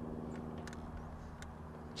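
A boat motor running with a steady low hum, with a few faint clicks as a jig hook is worked out of a crappie's mouth.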